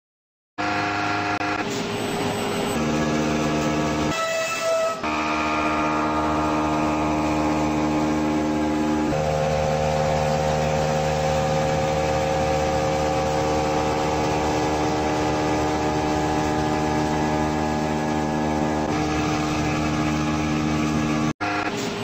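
Background music: long held chords that shift every few seconds, starting about half a second in and cutting off suddenly near the end.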